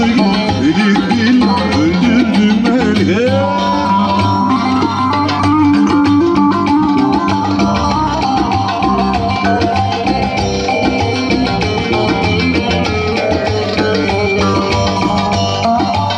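Live instrumental Turkish dance tune (oyun havası) played on an amplified bağlama (saz) with a Yamaha Genos keyboard, a fast melody over steady keyboard accompaniment. A few sliding, bent notes come about three seconds in.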